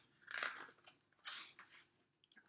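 Two brief, faint rustles of a paper book page being turned, about a second apart.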